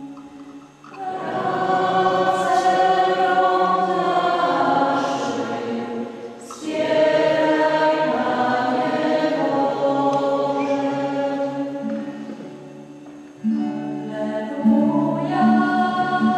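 Two young voices singing the responsorial psalm of a Catholic Mass together into the ambo microphone, in long held notes over three phrases with short breaks between them.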